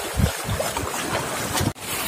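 Wind buffeting the microphone over the steady wash of sea surf, with a few low gusty thumps; the sound cuts off abruptly near the end.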